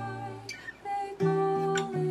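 Solo acoustic guitar played as song accompaniment: picked bass notes under ringing chords that change every fraction of a second, with a louder chord struck about a second in.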